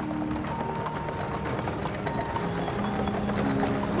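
Hooves of a pair of carriage horses clip-clopping on pavement, growing a little louder toward the end, over background music with long held notes.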